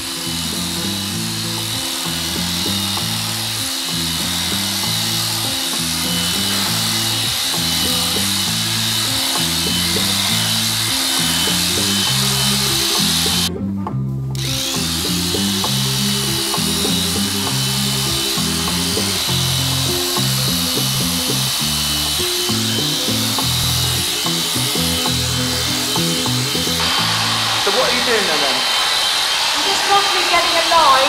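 Background music with a steady stepping bass line, laid over the steady high whine of Sure-Clip electric horse clippers running through a horse's coat. The clipper whine drops out for under a second about halfway through.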